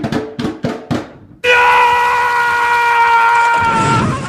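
Four drum strikes about a third of a second apart, then a loud, steady high-pitched tone held for about two seconds that fades near the end.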